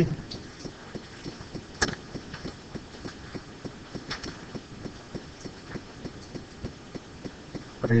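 Lecture-room background noise: faint scattered clicks, taps and rustles from the students, with one sharper knock about two seconds in.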